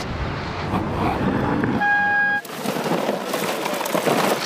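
Street traffic: a vehicle's low rumble, then a single short, steady horn toot about two seconds in, followed by a fainter hissing noise.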